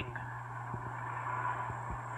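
Car engine running at low speed as the car is slowly backed up, a steady low hum with a couple of soft low thumps.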